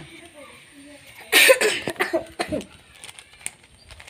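A person's voice close to the microphone: a loud, short, rough burst about a second and a half in, then a few brief voice sounds.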